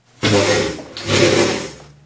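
A wooden meter stick lever clattering twice against its metal fulcrum stand and the tabletop as it is rocked over, each knock with a short rattling fade.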